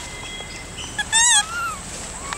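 A rhesus macaque's short, high-pitched call with a wavering pitch about a second in, followed by a fainter rising-and-falling call.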